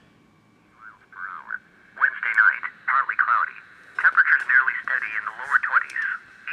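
NOAA Weather Radio broadcast played through an iPod Touch's small built-in speaker: an automated synthesized voice reading the weather in short phrases, thin and tinny, starting about a second in.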